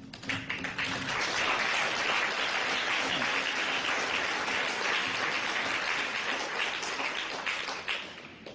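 Audience applauding: a dense patter of many hands that builds over the first second, holds steady, then dies away near the end.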